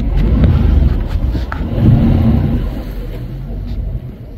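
Howler monkeys roaring in the trees: a deep, rough roar that swells, is loudest about two seconds in, then eases off.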